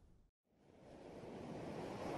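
A moment of dead silence between tracks, then a rushing ocean-surf sound fades in and grows steadily louder.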